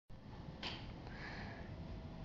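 Faint background hiss with a person's short sniff close to the microphone about half a second in.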